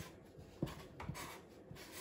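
A felt-tip Sharpie marker drawn across paper on a wooden easel as a child writes the strokes of a Chinese character. It comes as a few short, faint strokes with small gaps between them.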